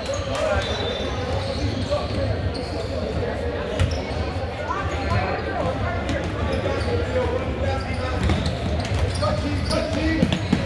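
Basketball bouncing on a gym's hardwood floor during a game, with a steady hubbub of player and spectator chatter echoing around a large hall.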